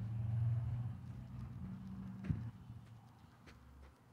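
Low engine hum of a passing motor vehicle, swelling to its loudest about half a second in and then fading away. A single sharp click sounds a little past two seconds in.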